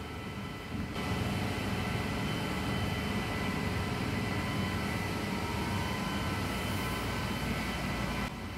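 Steady hum of running pump machinery with a faint high whine, starting about a second in and holding level.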